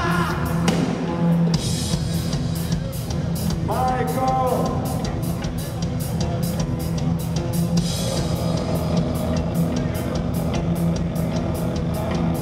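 Rock band playing live: drum kit keeping a steady beat with regular cymbal strikes, over distorted electric guitars and bass, recorded from the audience.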